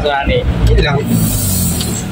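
Truck engine running steadily at low speed, heard from inside the cab, with a brief high hiss starting about a second in.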